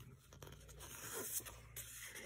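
Faint rustling of printed sticker sheets sliding against each other as they are shuffled by hand, with a few brief crackles of the paper.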